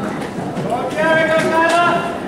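Spectators' voices in a large hall, with one high voice calling out and holding a long note from a little under a second in.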